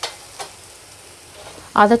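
Onion-tomato masala sizzling faintly in a stainless steel kadhai, with two short clicks: one at the start and a smaller one about half a second in.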